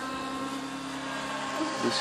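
Align T-Rex 600E Pro electric RC helicopter in flight, its motor and rotor giving a steady whine made of several held tones.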